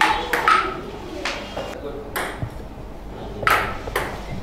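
Table tennis rally: a ping-pong ball clicking sharply off the paddles and the table, a handful of hits at uneven intervals, some with a brief ringing tail.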